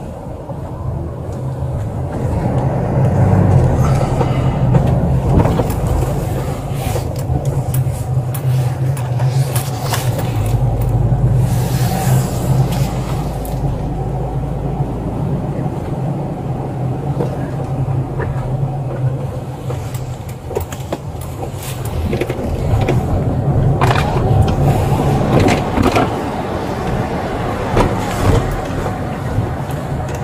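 Police patrol car driving, its engine and road noise heard from inside the cabin as a steady low hum, with a few sharp knocks.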